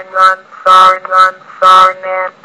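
Computer text-to-speech voice reading out a list of words one short syllable after another, about two a second, each held at a flat, unchanging pitch.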